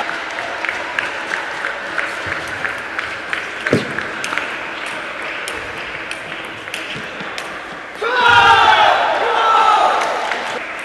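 Table tennis ball clicking back and forth off bats and table about twice a second in a rally, with one louder hit near the middle. Voices come in loudly at about eight seconds in.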